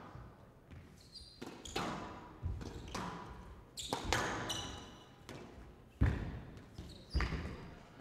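Squash rally: sharp smacks of the ball off rackets and the walls and floor of a glass court, about one or two a second, each ringing briefly in the hall, with a few short high squeaks of shoes on the court floor.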